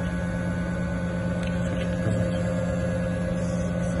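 Electric motor inside a generator unit, just started, running steadily: a constant hum with a few higher steady tones above it.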